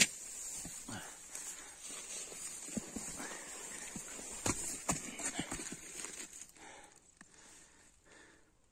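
Footsteps crunching and scuffing over a gravelly forest floor strewn with leaf litter, in irregular steps over a faint steady hiss; the steps die away near the end.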